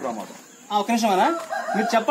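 A rooster crowing, a held high call that starts about two thirds of a second in, over a man talking.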